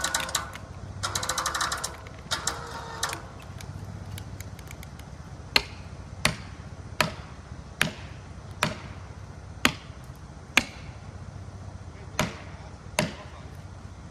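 Hammer blows on a felling wedge driven into the cut at the base of a poplar. There are nine sharp strikes, roughly one a second, starting about five seconds in.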